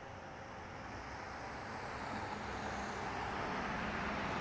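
A car approaching along the road, its engine and tyre noise growing steadily louder.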